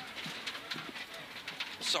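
Mitsubishi Lancer Evolution X rally car's turbocharged four-cylinder driving at speed on gravel, heard muffled from inside the cabin as a steady road and engine noise with scattered short ticks.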